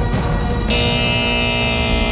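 Television show theme music over the opening title card: a heavy low beat, then, a little under a second in, a bright sustained chord that is held.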